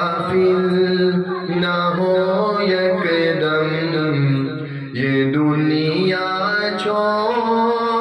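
A man singing an Urdu naat into a handheld microphone, in long held melodic lines that glide between notes, with a brief pause for breath about five seconds in.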